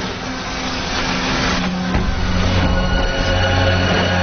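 Cartoon soundtrack music with held notes over a rushing, rumbling noise effect, which thins out about halfway through as higher sustained notes come in.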